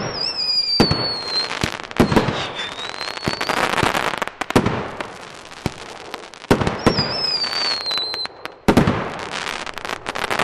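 A multi-shot fireworks cake firing: sharp bangs every second or two, with whistling comets whose whistles fall in pitch near the start and again about seven seconds in. Dense crackling follows the bursts.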